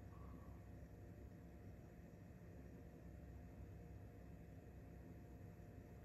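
Near silence: room tone with a faint steady hiss and hum.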